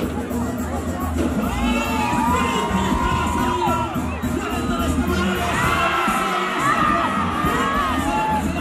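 Large crowd cheering and shouting at a bull ride, with many shrill high shouts rising and falling from about a second and a half in. Music plays beneath.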